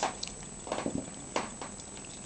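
Kitchen knife cutting and scraping meat off a raw chicken thigh bone on a wooden cutting board: a few short, irregular knocks and scrapes, the sharpest a little past halfway.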